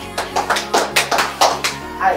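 Two people clapping their hands, a quick run of claps, over background music.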